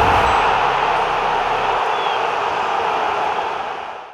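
Outro ident sound effect: a loud, steady rush of static-like noise that fades away near the end.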